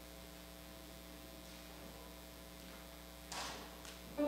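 Steady low electrical mains hum in the recording feed. A short burst of hiss-like noise comes a little over three seconds in.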